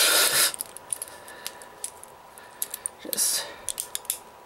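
A plastic Bakugan figure being handled and snapped shut into its ball form: scattered small sharp clicks of its hinged parts. A short rustling hiss at the start and another about three seconds in.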